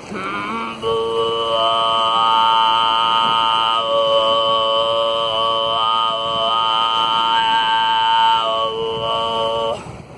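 A woman throat singing one long held note, with a high steady overtone ringing above it and the overtones below shifting in pitch several times. It starts about a second in after a short rising onset and cuts off just before the end.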